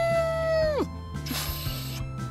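A long, high, held whoop-like cry that swoops up at the start and drops away after less than a second, cheering the launch of a toy snowmobile off a snow jump. It is followed by a short hissing whoosh, over steady background music.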